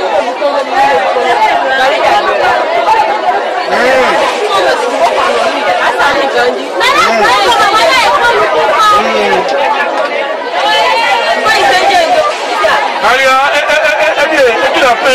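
Several people talking loudly over one another in unbroken, overlapping chatter, in a language the recogniser could not write down.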